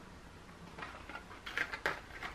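A cardboard box of wax crayons being picked up and handled, the crayons rattling inside. It gives a run of light clicks that starts about a second in and grows louder toward the end.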